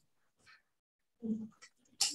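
Near silence, broken about a second in by one short pitched vocal sound lasting about a quarter of a second.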